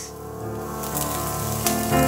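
Background music over a faint sizzle of baby king oyster mushrooms frying in hot oil in a stainless steel pan. The sizzle grows from about a second in.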